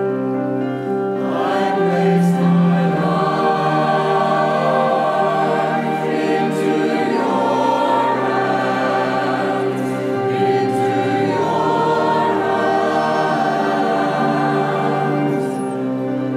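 A church choir singing a psalm setting over held accompaniment chords. The voices come in about a second in and carry on steadily.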